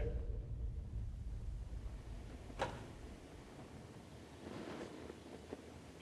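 A single sharp crack from the wooden bleachers about two and a half seconds in, with a fainter tick near the end, over a low rumble that fades away in the first couple of seconds. The investigators first took such noises for the wood of the bleachers settling.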